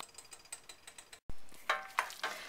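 Faint, irregular small clicks of camera handling, then a dull thump about a second in as the camera is moved. A voice begins near the end.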